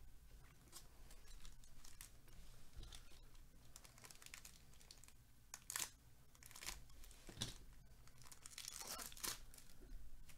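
A foil trading-card pack being torn open and its wrapper crinkled: faint crackling, with several sharper rips in the second half.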